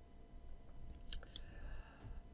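Two or three quiet clicks of a wireless Logitech computer mouse, close together a little past the middle.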